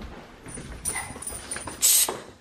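Mini poodle puppy scuffling about on a tile floor, its claws clicking, as it plays and nips at feet, with a louder scuffle just before the end.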